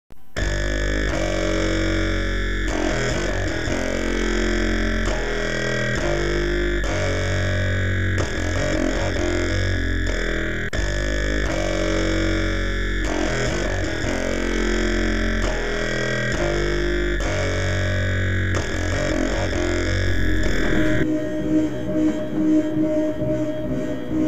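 Psychedelic jam music: heavily effected electric guitar droning in sustained chords over a deep bass drone, the chords shifting every couple of seconds. About 21 seconds in the sound thins out into a rapid pulsing texture.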